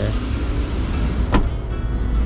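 A Mazda Atenza sedan's rear passenger door being shut: a single sharp knock about a second and a half in, over background music and a steady low rumble.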